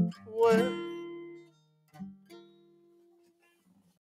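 Acoustic guitar's last chords of a song ringing out and dying away, followed about two seconds in by two soft plucked notes that fade quickly.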